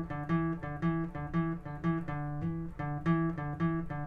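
Classical acoustic guitar playing a single-note riff on the A string, alternating between the fifth and seventh frets (D and E) in a steady, even rhythm of about three to four picked notes a second.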